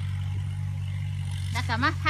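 A steady low mechanical hum, with a woman's voice starting near the end.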